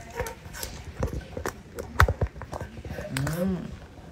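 Handling noise from a phone being moved and pressed against something: rubbing with a string of irregular knocks and clicks, the loudest knock about two seconds in.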